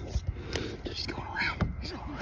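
Hushed whispering from people hiding, with a couple of soft knocks near the start.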